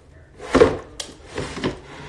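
A few knocks and thuds of a picture book and a small drawer under a child's table being handled, with a sharp click about a second in.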